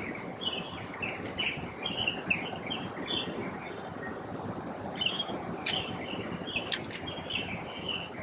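Bird calls: a run of short chirping notes, two or three a second, with a brief pause in the middle and a few sharper notes in the second half, over a steady low background rumble.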